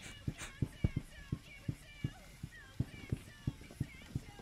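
A rapid, irregular run of dull thumps, about four a second, from a person flailing about in excitement and banging on his desk and chair.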